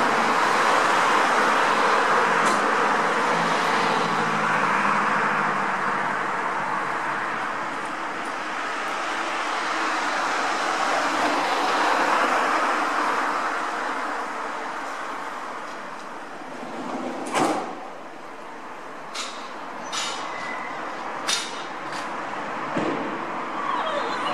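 Passing road traffic heard as a steady rush that swells and fades over several seconds, with a faint steady hum underneath. A few short sharp clicks come in the last seven seconds.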